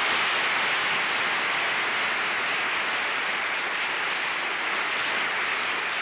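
Studio audience applauding steadily, easing off near the end.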